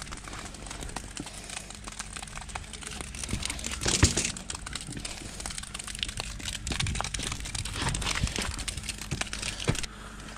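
Crunching and rustling of dry leaves and debris underfoot and being handled, a dense run of small clicks with a stronger burst about four seconds in, over a faint steady low hum.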